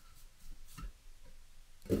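A few faint taps and one low knock from a kitchen knife and hands on a wooden cutting board as a fish fillet is skinned and handled.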